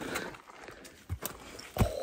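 Walking on a forest trail: a few irregular soft knocks of footsteps over a faint rustle.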